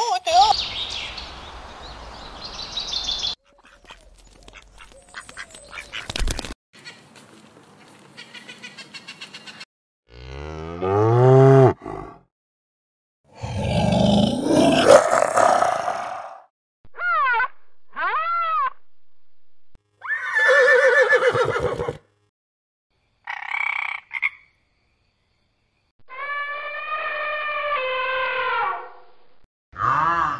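A string of different animal calls, one after another with short silent gaps. It includes a stretch of rapid even ticking, pitched calls that arch up and down in pitch, a loud rough call near the middle, and a longer steady-pitched call near the end.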